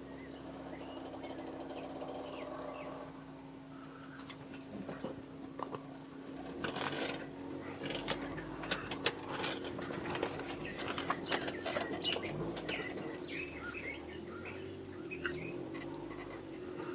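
Car interior with the engine running at a steady low hum. From about six seconds in, a dense irregular clatter of clicks and rattles sets in as the tyres roll over cobblestones.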